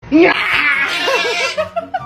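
A person's loud burst of laughter, a run of quick pulses that trails off into shorter ones near the end.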